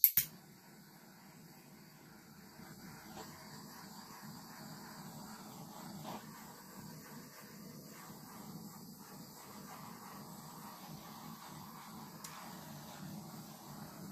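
Small handheld butane torch: a sharp click at the start, then its flame hissing steadily as it is played over wet acrylic pour paint to bring up cells.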